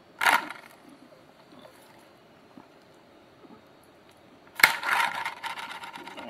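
A homemade magnet wheel's rotor arm turning on its pivot past a ring of small magnets. There is a short loud burst just after the start, then faint light ticking as it turns, then a sharp click about four and a half seconds in followed by about a second of noise as the arm sticks at a magnet and hangs.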